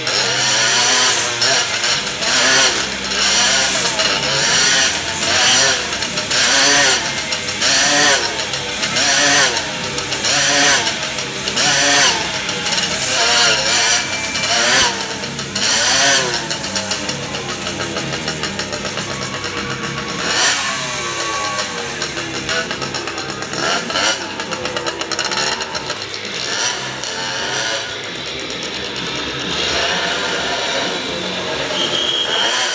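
Motorcycle engine circling inside a steel-mesh Globe of Death, its pitch rising and falling about once a second as it laps the sphere. After about 16 seconds the swings slow and the engine eases off.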